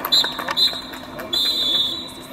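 Referee's whistle blown three times: two short blasts, then a longer one held for most of the last second.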